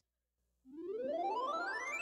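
A synthesizer glide that starts about half a second in and climbs steadily in pitch: the musical intro of a children's English-course audio track being played back.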